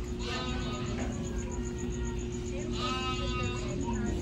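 Two drawn-out bleating animal calls, one just after the start and one about three seconds in, each under a second long, over a steady hum in the room.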